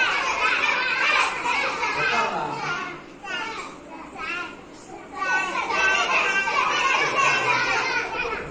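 A crowd of young children in a classroom calling out at once, many high voices overlapping, while they raise their hands to be picked. The noise runs loud for about three seconds, eases off briefly, then swells again about five seconds in.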